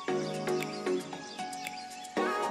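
Background music: held chords over a steady beat of about four ticks a second, with the chords changing roughly once a second.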